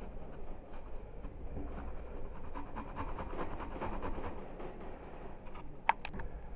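Quince being grated on the fine side of a flat metal grater: quick, repeated rasping strokes of the fruit over the metal teeth. A single sharp click near the end.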